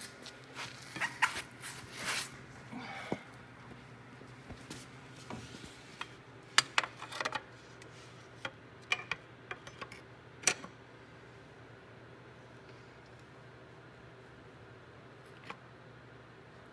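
Scattered metallic clinks and knocks of a pry bar and tools against engine parts, in two clusters, the second ending about ten seconds in, with one last click near the end over a faint steady hum.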